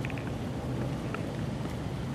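Steady outdoor background noise with a low rumble, in a short break in the talk.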